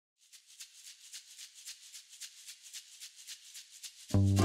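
Faint intro music: a shaker playing an even rhythm of about five strokes a second, starting from silence just after the start.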